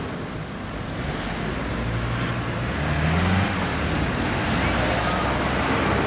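Street traffic: a car's engine passes close, its note rising and loudest about three seconds in, over steady road noise.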